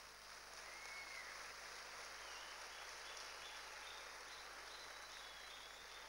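Faint, even applause from a seated hall audience. A brief faint whistle-like tone comes about a second in.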